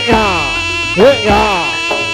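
Live Javanese jaranan ensemble music: a buzzy reed trumpet (slompret) plays swooping phrases whose notes bend up and fall away, over a low kendang drum stroke about a second in.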